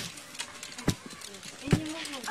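Pestle pounding grain in a mortar: heavy thuds at a steady beat, about one stroke a second.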